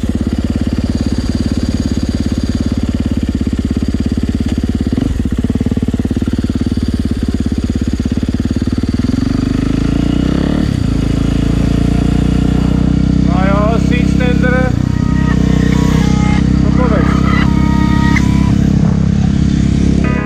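Suzuki DR-Z400SM supermoto's single-cylinder engine with an FMF exhaust, running on the road. The revs change around the middle as it pulls away and shifts gear, then it runs on steadily.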